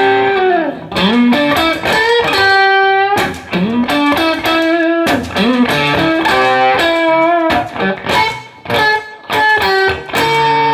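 Stratocaster-style electric guitar playing bluesy lead lines: single-note phrases with string bends gliding up into held notes, broken by short pauses between phrases.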